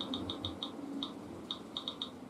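Intraoral scanner giving short, high-pitched electronic beeps in irregular quick runs while it captures a bite scan, over a faint low hum.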